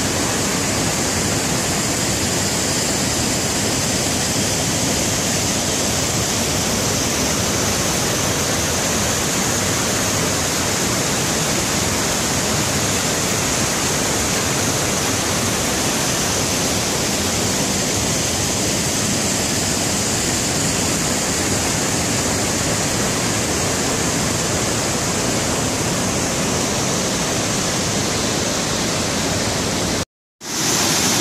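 Rushing whitewater of a rocky river's rapids and small cascades: a loud, steady, unbroken rush of water.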